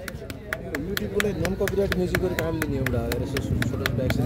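A quick, even run of sharp hand claps, about five a second, stopping shortly before the end, over faint voices.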